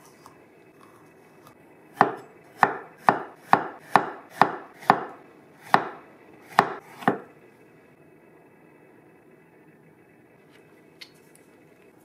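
Deba kitchen knife chopping a red bell pepper into strips on an end-grain wooden cutting board: about ten sharp knocks of the blade meeting the board, roughly two a second, starting about two seconds in and stopping about seven seconds in.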